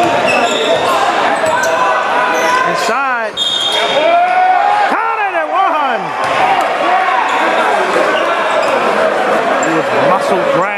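A basketball dribbling on a hardwood gym floor amid players' and spectators' voices echoing in the hall, with sharp squeaks from sneakers on the court.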